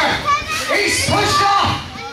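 Children in the crowd shouting and yelling over one another, echoing in a large hall.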